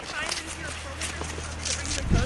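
Indistinct voices of a group of skiers over scattered crunches and scrapes of cross-country skis and poles on snow, with a steady low rumble underneath.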